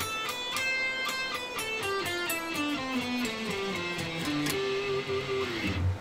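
Electric guitar playing a scale run as single picked notes at an even pace, stepping down in pitch and then climbing back up. The notes stop just before the end with a low thump.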